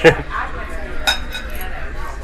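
Cutlery clinking against tableware, with one short ringing clink about a second in.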